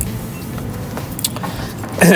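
Steady low background rumble of room noise, with no distinct event standing out.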